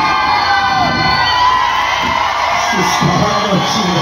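Large concert crowd cheering and shouting, a dense wall of many voices with high calls rising above it.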